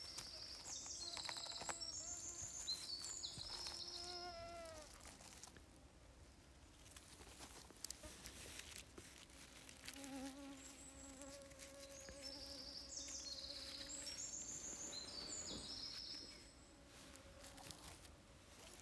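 A fly buzzing close by, its faint hum wavering in pitch, in the first few seconds and again from about ten to sixteen seconds in. Small songbirds sing short, repeated high trills over it.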